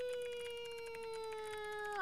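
A woman's voice holding one long, high note that slides slowly down in pitch, with a few faint clicks underneath.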